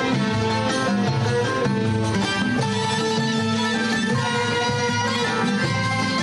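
Traditional Arabic instrumental ensemble playing a steady melody, with plucked oud and qanun and a ney flute, without singing.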